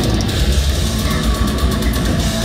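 Brutal death metal band playing live at full volume: distorted electric guitar, bass guitar and drum kit, with a heavy, booming low end.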